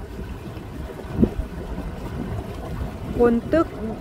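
Low steady rumble of a boat under way on the river, with wind buffeting the microphone and a short thud about a second in.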